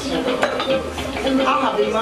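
Dishes and cutlery clinking against a background of voices, with one sharp clink about half a second in.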